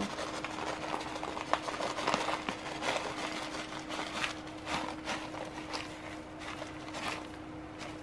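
Plastic bag of grated cheese crinkling in irregular rustles and light crackles as the cheese is shaken out of it onto a pasta bake, over a steady low hum.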